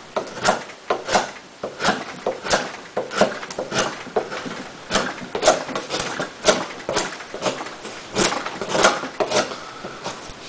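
Gerber Profile knife carving into a block of wood, each stroke taking off a shaving with a short sharp scrape, about two strokes a second in a steady rhythm.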